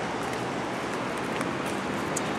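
Steady hiss of road traffic from a nearby city street, with no single vehicle standing out.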